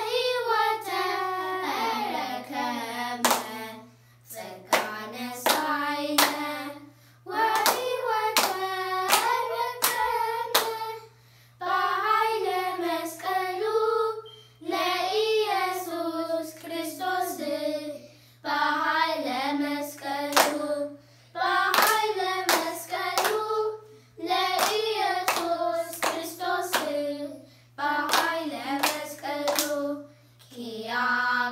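Children singing an Ethiopian Orthodox mezmur (hymn) together in phrases of a few seconds with short breaks between them, clapping their hands in rhythm with the song.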